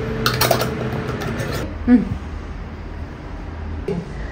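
Stainless steel funnel and glass jar clinking and scraping several times in quick succession as the funnel is lifted off a jar filled with tomato pulp and set down, over a steady low hum.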